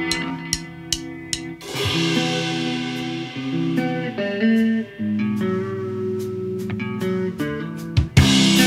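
Electric guitar and bass guitar playing the slow opening of a rock song: held chords that change every second or so, with a few short sharp ticks among them.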